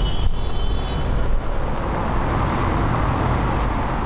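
Steady, loud rumble of road traffic or vehicle engines, with a thin high tone in about the first second.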